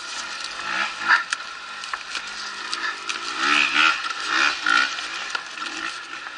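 A man grunting and straining with effort several times while wrestling a dirt bike up a steep sandy bank, with scrapes and knocks of the bike against the sand.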